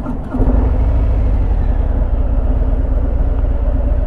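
Harley-Davidson Fat Bob's Milwaukee-Eight 107 V-twin pulling away. It gets louder about a third of a second in, then runs steadily.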